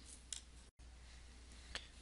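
Near silence with two faint clicks, one about a third of a second in and one near the end, from jumper wires being pushed into breadboard sockets.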